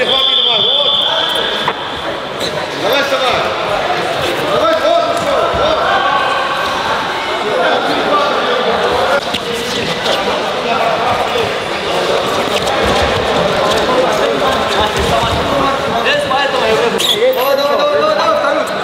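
Freestyle wrestlers grappling on wrestling mats in a large hall: repeated thuds and scuffs of bodies and feet on the mats, amid the indistinct voices of many people. There is a brief high squeal at the start.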